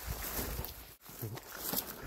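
Footsteps and tall crop stalks brushing against the legs while walking through an overgrown field, over a low rumble; the sound drops out for an instant about halfway.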